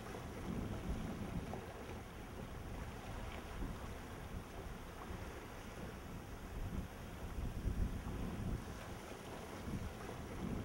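Wind buffeting the microphone outdoors: an uneven low rumble that swells and fades, loudest a little before the end.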